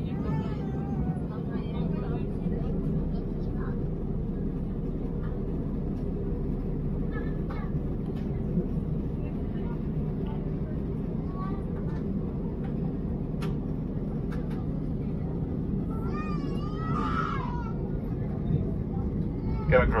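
Steady, low jet-airliner cabin drone of engines and airflow heard from a window seat. Faint passenger voices come through it, one clearer voice about three-quarters of the way through, and a cabin PA announcement begins right at the end.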